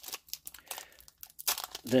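Foil booster-pack wrappers crinkling as they are handled: a quiet string of short crackles.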